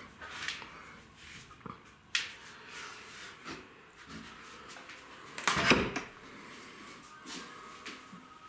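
Scattered knocks and clicks of movement in a small room: a sharp click about two seconds in and a louder knock a little past the middle.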